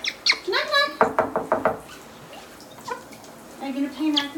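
Pet parrot making short voice-like calls, with a quick run of about five knock-like taps about a second in, over the faint hiss of a hand-held shower spray.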